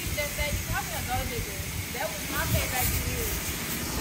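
Faint, indistinct talking in short phrases over a steady background hiss.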